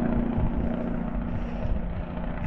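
Heavy truck's engine brake (Jake brake) on a downhill grade: a steady low drone over a rapid pulsing. The truck is braking on its engine under a heavy load.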